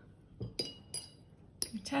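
Art tools being handled as a pencil is set down and a paintbrush taken up: a light clink about half a second in, with a brief high ringing, then a sharper click just before a word is spoken.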